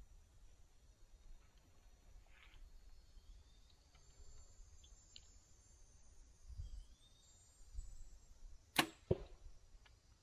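A bow shot near the end: a sharp crack of the string being released, followed about a quarter second later by a second, weaker knock as the arrow strikes the target. Before it, only faint rustling.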